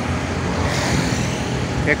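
Road traffic noise on a bridge roadway: a steady rumble of passing motor vehicles.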